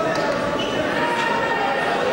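Many people talking at once in a large sports hall, a steady murmur of voices, with a few faint, light thuds.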